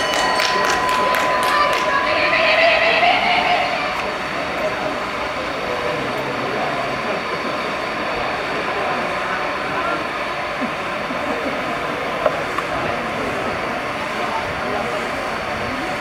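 Rapid hand clapping of about three to four claps a second, with a shouted cheer of encouragement, then a steady rushing noise for the rest.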